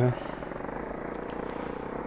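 Off-road motorcycle engine running steadily under load on an uphill dirt track, heard faintly and evenly.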